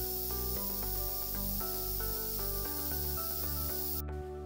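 Background music with sustained notes, over a steady hiss of a dental unit water line being flushed, spraying water into a stainless steel sink.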